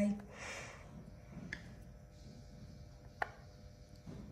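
Wooden chopsticks clicking lightly against a ceramic plate as sausage slices are laid onto noodles: a faint click about one and a half seconds in and a sharper one about three seconds in, after a brief soft rustle near the start.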